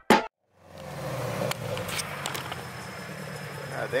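Car engine running at idle, a steady low hum that comes in about half a second in and holds.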